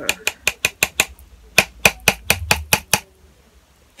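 A spoon clicking and tapping rapidly against a container while scooping up the coffee-grounds scrub: two quick runs of sharp clicks that stop about three seconds in.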